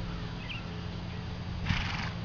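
A horse trotting under a rider on sand arena footing, with a short breathy burst of noise near the end.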